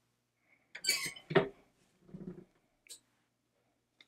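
Metal clinks and knocks from a clamshell heat press as its clamp handle is released and the hot upper platen is eased open under hand pressure, the loudest knock about a second and a half in, then a small click near the end.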